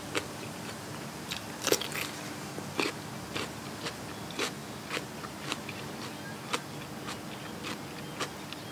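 Close-miked chewing of a crisp raw vegetable: irregular crunches and mouth clicks, the loudest about two and three seconds in.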